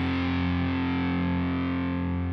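A distorted electric guitar chord ringing out and held, slowly dying away.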